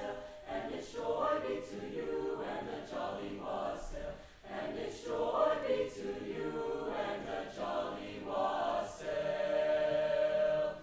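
Mixed-voice chamber choir singing in phrases with short breaks between them, ending on a long held chord near the end.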